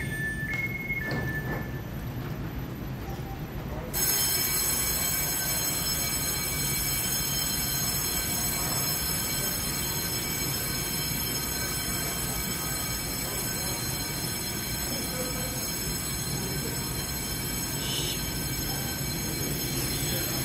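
A two-tone electronic train door chime sounds briefly at the start. About four seconds in, the level steps up suddenly to a steady hum from a standing EMU900 electric multiple unit, with several steady high whining tones over it.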